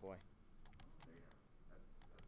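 Faint, irregular clicking of computer keyboard keys and mouse buttons.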